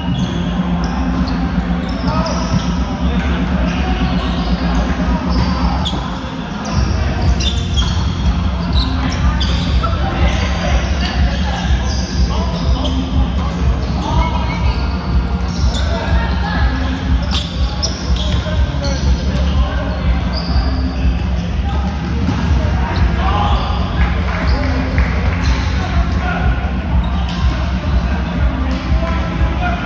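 Echoing indoor gym ambience: balls bouncing and being struck on a hardwood court, many short knocks at irregular intervals, over a steady low hum and background chatter of players.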